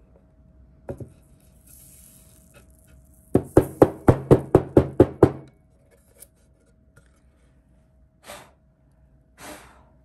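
Wooden craft board knocked repeatedly against the tabletop to shake loose excess glitter: one knock about a second in, then a quick run of about ten sharp knocks, roughly five a second. A faint hiss of loose glitter sliding off comes before the run, and two short soft rustles come near the end.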